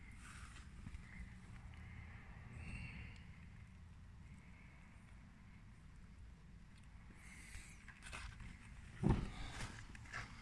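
Faint low rumble with soft rustling and a few light knocks; a louder rustle and knock comes near the end.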